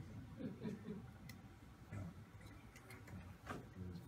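A few light clicks and taps of metal as the rods of an adjustable ground-plane antenna are handled and set, over a faint low room murmur.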